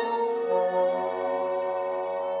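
Solo violin playing slow, long-held notes, with the note changing about half a second in.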